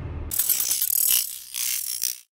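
Sound effect of a socket ratchet or similar mechanism clicking rapidly, in two spells, the second starting about halfway through.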